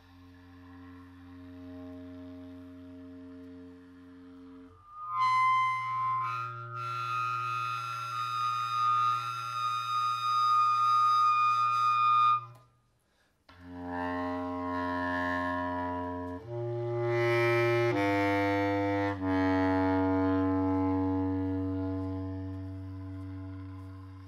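Bass clarinet improvising in long held notes: a quiet low note, then a loud, bright note with strong high overtones. After a short break about halfway, a run of held notes steps up and back down, the last one slowly fading near the end.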